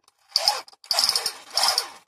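A toy machine gun firing: its trigger-driven sparking mechanism rattles in short, rapid bursts as it throws sparks at the muzzle. There is a brief burst about half a second in and a longer one of about a second after it.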